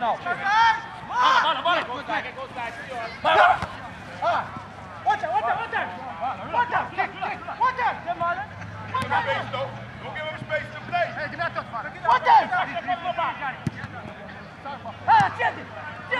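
Several voices shouting and calling out across a football pitch during play, with no clear words. A faint steady low hum runs underneath.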